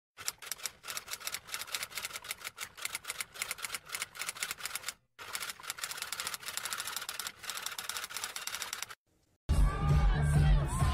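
Typewriter keystroke sound effect, a rapid clatter of keys in two runs with a brief break about halfway through. It stops a little before the end, and half a second later a loud live concert recording with music and a cheering crowd cuts in.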